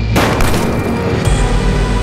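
Trailer sound-design impact: a sudden loud hit just after a cut to black, fading away over a steady music drone, with a second deep boom about a second later.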